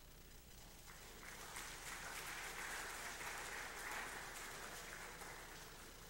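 Faint audience applause that starts about a second in, swells, and dies away before the end.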